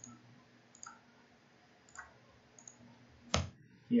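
A few faint computer mouse and keyboard clicks, about one a second, then one sharper, louder click a little after three seconds in.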